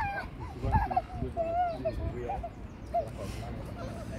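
Small children's voices: short, wavering, high-pitched vocal sounds and babble, not clear words.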